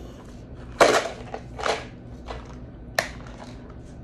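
Hands wrestling with the stuck lid of a small plastic tub: a few noisy bursts of plastic scraping and creaking, with a sharp click about three seconds in.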